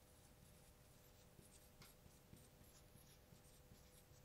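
Near silence with the faint squeak of a marker writing words on a glass lightboard, a thin wavering high tone.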